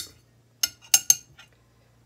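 A metal utensil clinking against a glass olive jar a few times, short sharp clinks spread over about a second, as olives are fished out of the jar.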